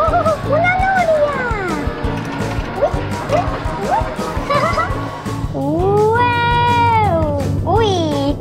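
Playful children's background music with a voice making several long wordless calls that glide up and down in pitch. The longest call swells and holds a little past the middle.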